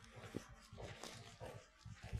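Faint felt-tip marker on flip-chart paper, drawing in several short scratchy strokes.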